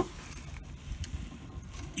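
Low background hiss with light handling noise: a sharp click at the very start, then a couple of faint ticks and rustles as the phone camera is worked into a hole in the car's rusted sill.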